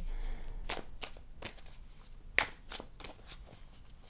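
A deck of cards being shuffled by hand, a run of soft, irregular flicks and slaps as cards slide from one hand onto the other, the sharpest a little past the middle.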